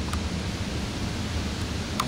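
Steady hiss of background room noise, with a faint click or two at the very start.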